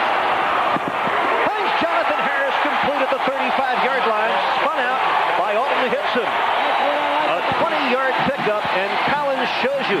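Stadium crowd cheering during a football play, heard through a TV broadcast. The noise is densest at the start, and men's voices run over it from about a second and a half in.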